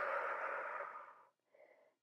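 A woman's long breath out, a breathy sigh that fades away just over a second in.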